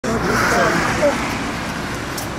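Several people talking over one another, with a steady low engine hum underneath from the coach beside them, its engine left running.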